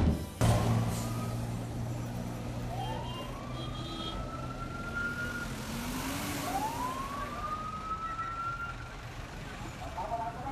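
Street traffic with a truck's engine running close by and a siren rising in pitch twice, each rise lasting about two and a half seconds.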